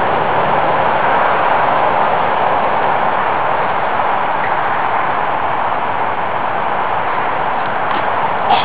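Steady, even rushing noise with no distinct events.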